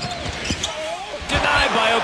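Basketball dribbled hard on a hardwood arena court, several quick bounces in the first second, under game-broadcast sound with a voice; the sound gets denser and louder in the second half.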